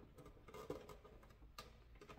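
Near silence with a few faint clicks and taps: a power cord being worked into a slit in a plastic hydroponic reservoir base.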